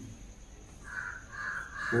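A bird calling three times in quick succession, about half a second apart, starting about a second in.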